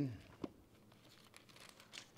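Thin Bible pages rustling and flicking softly as they are turned by hand, with one sharper tick about half a second in.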